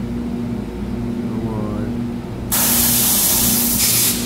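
A loud hiss that starts abruptly past the middle and lasts about a second and a half, over a steady low hum.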